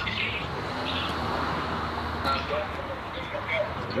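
Steady outdoor road-traffic noise with a low rumble, and faint snatches of men's voices in the background.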